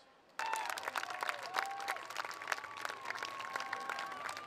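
Crowd applauding, starting suddenly about half a second in, with a few long held calls heard over the dense clapping.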